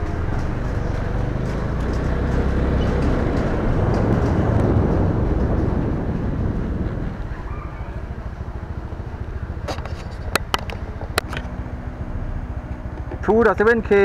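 Wind and road rumble on an action camera's microphone while riding along a street, louder for the first six seconds and easing off after. A few sharp clicks come about ten to eleven seconds in.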